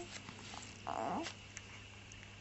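A two-month-old baby cooing: a loud coo trails off at the start, then one short, soft coo follows about a second in.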